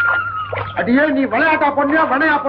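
A person's voice begins speaking about a second in, in film dialogue. A thin steady tone runs underneath during the first half-second.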